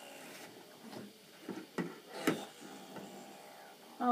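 A few light knocks of a plastic toy bathtub being handled against a table, the two sharpest about half a second apart just after the middle, in a quiet room.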